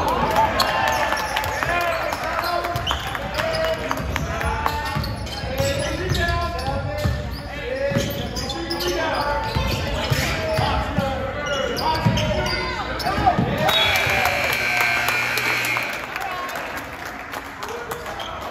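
A basketball bouncing on a gym's hardwood floor amid voices calling out during play. Near the end a steady scoreboard buzzer sounds for about two seconds, marking the end of the half.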